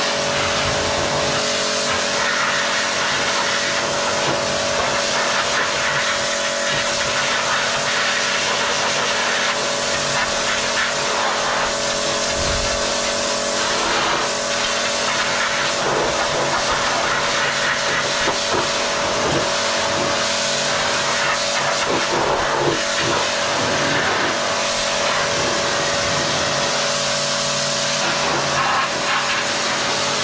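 Pressure washer (jet wash) running steadily, its motor and pump humming under the hiss of the water jet blasting grime off a stainless steel shower box.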